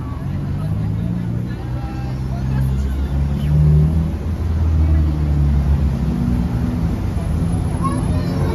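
Road traffic on a busy city street: vehicle engines running and revving past, their low pitch rising and falling, loudest about four to six seconds in.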